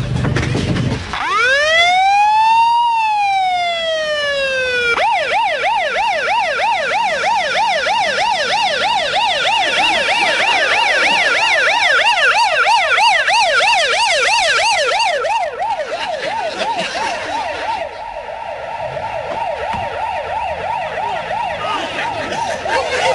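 Ambulance siren: starting about a second in with one slow wail that rises and then falls, then switching to a fast yelp of about three rises and falls a second, a little quieter in the last few seconds.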